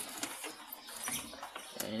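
Faint plastic handling sounds as a Honda Vario 125's headlight bulb socket is twisted anticlockwise behind the front cowl, with a sharp click near the end as the socket comes loose.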